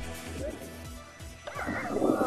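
News-bulletin background music with a steady beat, then about one and a half seconds in a dog starts yelping as a man strikes at it with a stick.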